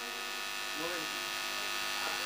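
Steady electrical mains hum and buzz from a microphone and public-address system, a dense set of steady tones with no speech over it.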